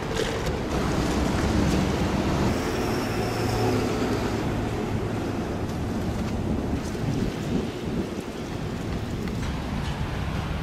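Wind buffeting the camera microphone outdoors, a steady low rumbling noise.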